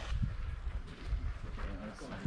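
Faint murmur of voices over a low, uneven rumble.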